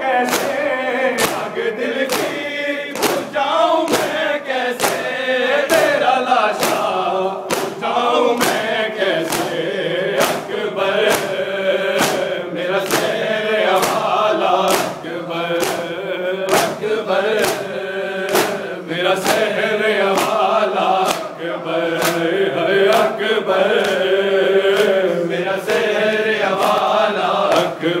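A crowd of men chanting a noha (mourning lament) in unison, with a steady beat of bare-handed chest-beating (matam) slaps a little more than once a second keeping time.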